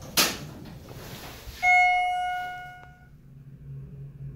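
A sharp knock, then about one and a half seconds in a single ding from the 1995 Schindler hydraulic elevator's chime, ringing out and fading over about a second.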